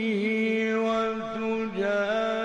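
A man reciting the Quran in melodic tajweed style, his voice held on long sustained notes with small ornamental turns in pitch.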